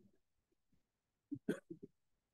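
A person chuckling briefly: four short, quick vocal bursts about one and a half seconds in, in an otherwise quiet room.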